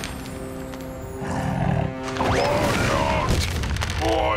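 Cartoon soundtrack: background music with held notes and a low rumble about a second in, then a cartoon polar bear's wordless, wavering cries from about halfway through as he leaps off the ice wall.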